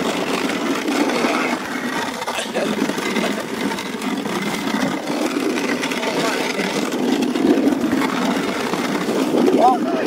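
Sled sliding over frozen river ice as it is towed on a rope, a steady rough scraping noise. Near the end there is a short voice cry.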